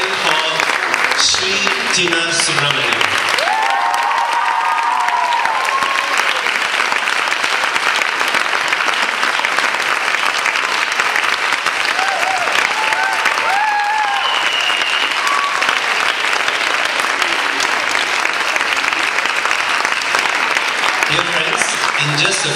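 Audience applauding steadily and loudly, with a few voices calling out above the clapping about four seconds in and again around thirteen seconds in.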